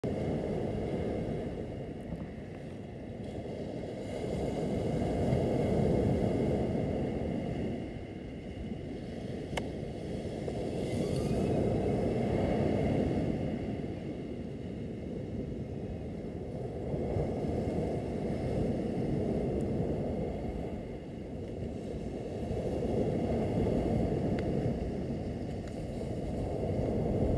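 Surf washing onto a beach, a low rushing noise that swells and fades about every six seconds.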